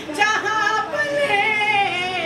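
A voice singing a devotional manqabat, drawing out long notes that waver and bend in ornamented turns.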